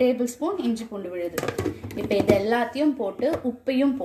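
Speech: a woman talking through most of it.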